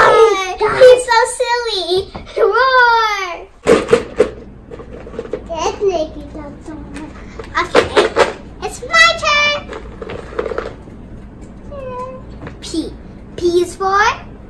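Young children's voices: high, sweeping cries in the first few seconds, children mimicking a cat or tiger. A single thump comes about four seconds in, followed by scattered short child vocalisations.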